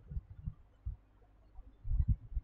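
Soft, dull low thumps at irregular intervals, several close together at the start and another pair near the end, like bumps picked up by a desk microphone.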